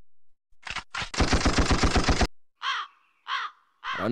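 A man laughing loudly and close to a microphone: first a fast rattling burst of laughter, then two short high whooping calls that fall in pitch.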